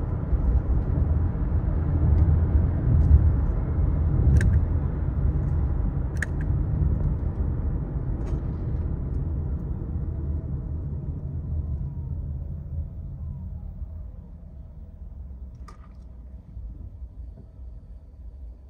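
Road and tyre rumble inside the cabin of a 2023 Honda CR-V Hybrid as it slows from highway speed to a stop under regenerative braking, running in EV mode as it slows. The rumble fades steadily as the car slows, with a faint falling whine in the second half and a couple of light clicks a few seconds in.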